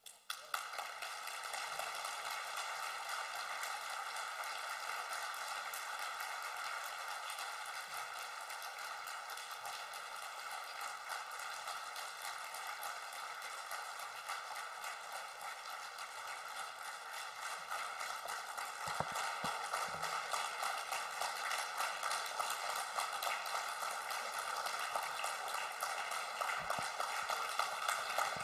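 Audience applauding steadily after a speech, the clapping growing a little louder in the last third.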